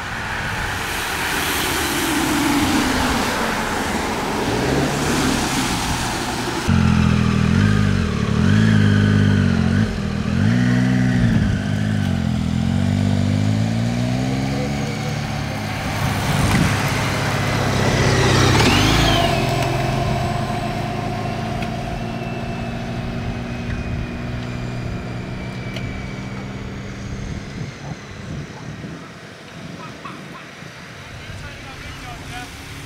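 Race vehicles passing, a following team car among them, with a rush of passing road noise. Then a low engine hum swells up and down several times before settling to a steady note.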